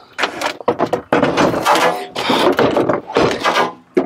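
A heavy 48V lithium battery pack, 49 kg, being slid down into a golf cart's battery compartment. Its case scrapes and squeals against the compartment sides for about two seconds, with a knock near the end as it seats.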